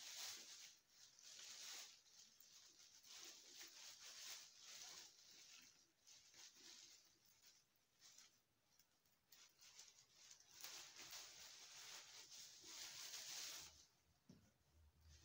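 Faint rustling and scraping of birch twigs and twine as the stems of a birch bath broom are bound tight with string, coming in soft irregular swishes, with a longer run of them in the last few seconds.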